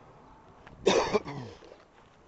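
A man coughing once, a short harsh burst about a second in, trailing off briefly.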